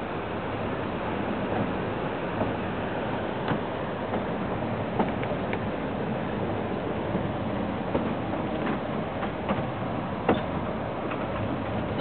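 Durango & Silverton narrow-gauge train rolling along the track, a steady rumble with a few faint sharp clicks of wheels on the rails.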